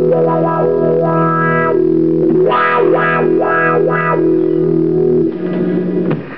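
Electric guitar played through distortion and floor effect pedals, holding sustained, overtone-rich notes and chords. The tone brightens in repeated pulses through the middle, and the playing stops about five seconds in.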